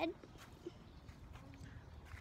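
A few faint footsteps and soft knocks over a low rumble.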